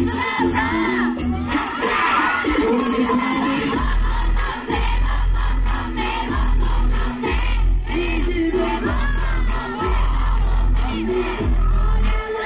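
Live hip-hop song playing loud over a concert PA, with a crowd shouting and singing along. A heavy bass line comes in about four seconds in and cuts out briefly a few times.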